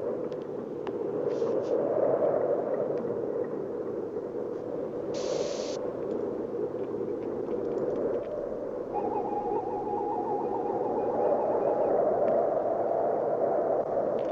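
A steady, noisy hum runs throughout, with a short hiss about five seconds in. Near the ten-second mark, a pulsing, warbling electronic tone from a hand-held medical scanner sounds for about two seconds.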